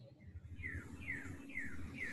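Faint bird chirps: three short, falling notes about half a second apart, over a faint steady room hum.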